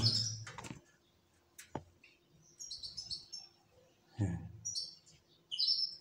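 Canaries chirping in short high bursts, a cluster about two and a half seconds in and another just before the end. A single sharp click comes about two seconds in and a brief low hum-like sound about four seconds in.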